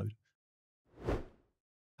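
A short whoosh transition sound effect about a second in, swelling and fading away within half a second.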